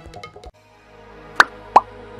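Background news music cuts off about half a second in. A channel-logo outro jingle begins, marked by two short, loud, upward-sweeping pops about a third of a second apart.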